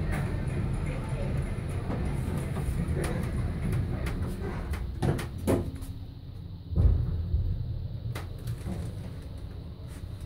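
Oakland passenger lift with its sliding doors closing and the car getting under way downward: a low steady hum with a few clicks, and a heavy thump about seven seconds in.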